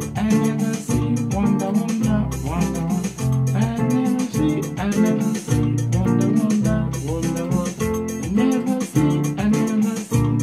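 Yamaha PSR-series portable keyboard played with both hands: a highlife chord groove in the key of F, chords struck in a steady bouncing rhythm.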